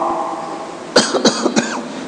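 A man coughing, two short coughs in quick succession about a second in, followed by a brief throat-clearing sound.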